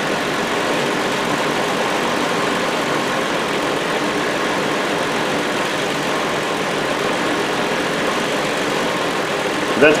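2007 Hyundai Sonata's 3.3 V6 idling steadily with the A/C running: an even, unchanging engine-bay running noise.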